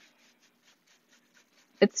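A round bristle wax brush scrubbing clear furniture wax onto a chalk-painted wooden cabinet door: faint, quick brushing strokes, about ten a second. A woman's voice starts a word near the end.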